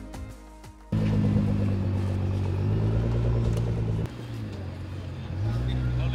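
Nissan GT-R's twin-turbo V6 running at low speed as the car moves across the lot, coming in suddenly about a second in and rising briefly in pitch near the end, under background music.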